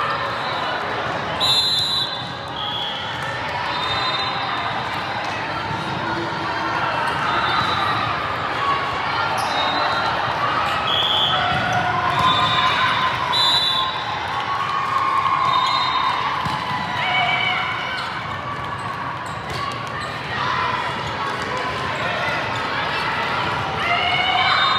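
Volleyball hall din: many overlapping voices from players and spectators carrying in a large, echoing hall, with a few sharp thuds of a volleyball being struck during the rallies.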